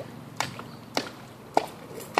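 Stones knocking against stones: three sharp clacks about half a second apart.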